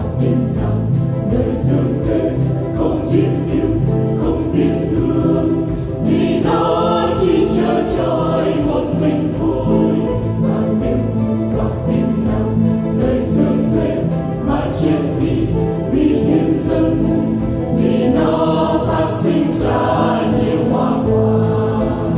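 A choir singing a Vietnamese Catholic hymn over an instrumental accompaniment, the voices growing louder from about six seconds in.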